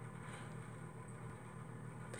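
Faint steady room tone: a low hum with light hiss and no distinct sounds.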